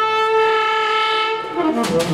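Tenor saxophone holding one long, steady note, then dropping into a quick run of falling notes near the end.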